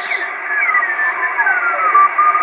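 Kenwood TS-450S HF transceiver's receiver audio as the tuning knob is turned: narrow-band hiss with whistling beat notes of signals gliding down in pitch, one settling into a steady tone near the end. The owner finds the receiver weak and later traces it to a bad antenna connector.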